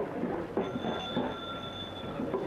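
A wheel squealing: one high, steady squeal that starts about half a second in and lasts about a second and a half, over a murmur of street voices.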